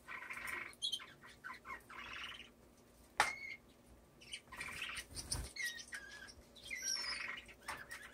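Small cage birds (finches and canaries) calling in an aviary: four buzzy calls about two seconds apart, with short whistled notes, chirps and a few clicks between them.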